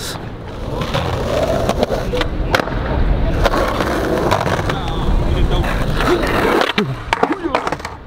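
Skateboard wheels rolling on smooth concrete with a steady rumble, broken by sharp clacks of the board hitting the ground, once or twice in the middle and several in quick succession near the end, as a trick is attempted.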